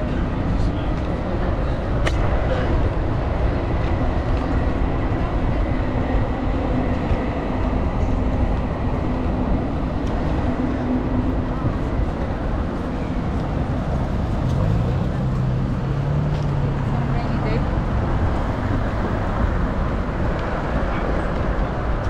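City street noise: a steady rumble of traffic with voices of passers-by, and a vehicle engine's hum standing out for a few seconds past the middle.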